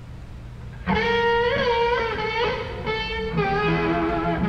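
Live country band music led by electric guitar: after a quiet moment it comes back in loud about a second in, with notes bending up and down in pitch.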